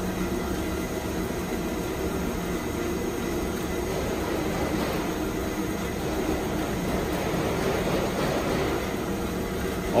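Steelmaster H-330HA twin-column bandsaw running steadily in its automatic cycle: the blade and drive running while the saw head feeds down slowly.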